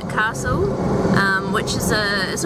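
A woman talking close to the microphone inside a moving car, over the steady road and engine noise of the cabin.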